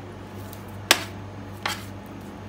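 Two sharp taps, the louder about a second in and a second shortly before the end, as seasoned potato wedges are set down one by one on a parchment-lined metal baking tray, over a steady low hum.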